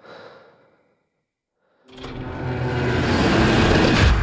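A brief soft noise, then a second of silence, then a film-trailer sound-design swell: a dense low rumble that builds steadily louder over the last two seconds, leading into a launch countdown.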